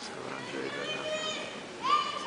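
Low chatter of audience members' voices, some of them high-pitched, with one voice rising briefly and louder just before the end.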